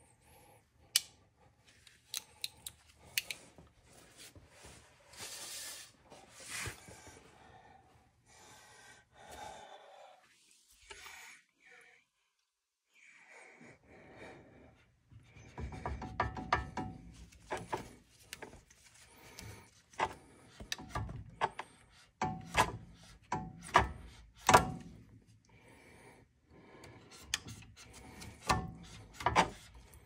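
Hands and tools working a brake line free at a car's disc brake caliper: scattered metal clicks and knocks, a brief lull, then a busier run of sharp knocks, clicks and scraping in the second half.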